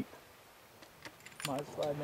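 A few faint, sharp metallic clicks over a quiet pause, then a man's voice starts near the end.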